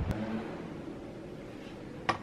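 Quiet, steady room background noise with no distinct event.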